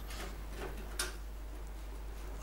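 Quiet screwdriver work on the screws along the bottom of a washing machine's front panel: faint ticking and handling, with one sharp click about a second in.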